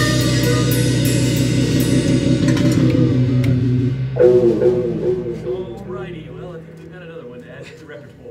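A small rock band with electric guitar, bass and drums playing out the end of a song; about four seconds in, a loud final hit rings and dies away, followed by quiet talk among the players.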